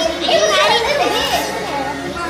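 Children and adults talking over one another, too mixed for words to come through, with children's high voices.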